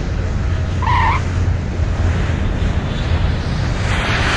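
Airplane sound effect: a steady engine noise, heavy in the low end, with a short higher tone about a second in.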